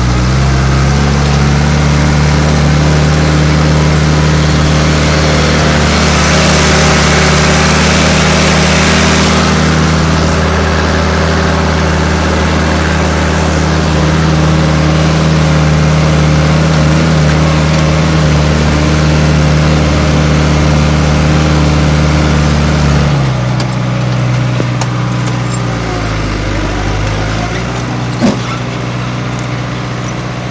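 New Holland TD80D tractor's diesel engine running steadily under load, pulling a disc plough through soil. About 23 seconds in the engine speed drops and its pitch falls, and there is a single sharp click a few seconds later.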